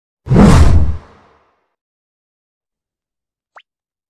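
Video-outro sound effects: a loud whoosh lasting under a second, fading out quickly, then a faint short click near the end.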